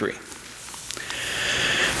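A man drawing a long breath in, growing steadily louder over about a second and a half, just before he speaks.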